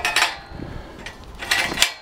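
Steel convertible hand truck rattling and clanking as its frame and handle are tipped up from the flat four-wheel position onto its two wheels, with two short bursts of metal clatter, one at the start and one about a second and a half in.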